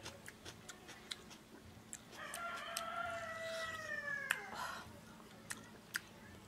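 A rooster crows once, one long call of about two and a half seconds starting about two seconds in and dropping slightly in pitch at the end. Short wet clicks of a man chewing and smacking his lips come and go around it.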